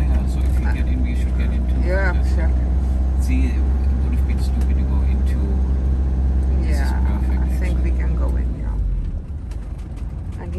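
Engine and road rumble heard inside the cab of a motorhome while driving. The low rumble is steady, then drops away about eight and a half seconds in as the vehicle eases off approaching a roundabout.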